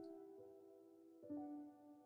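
Quiet background piano music: held notes fading away, with new notes struck about a second and a quarter in.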